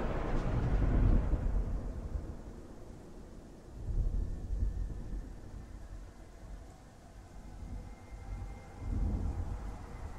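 Thunder rumbling in low rolls: a big roll in the first two seconds, another around four seconds and a third near the end, over a faint hiss like distant rain.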